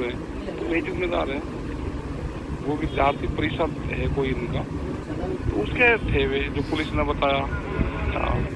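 Indistinct voices of people talking in a crowd, heard over a steady low outdoor rumble.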